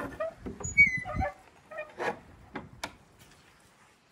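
A rusty barrel bolt being slid back and an old wooden plank door pushed open: a rumble of handling, a short high squeak about a second in, then a few sharp clicks and knocks.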